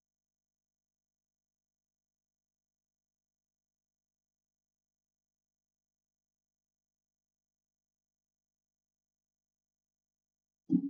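Silence: the audio is essentially digital silence, with no audible sound.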